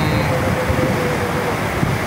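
Steady outdoor rushing noise with low, uneven wind rumble on the phone microphone, and a man's voice holding a hesitant 'uhh' for about the first second and a half.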